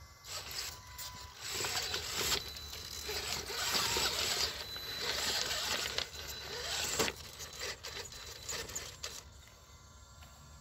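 Rough scraping and crunching against loose basalt rocks, with a sharp click about seven seconds in.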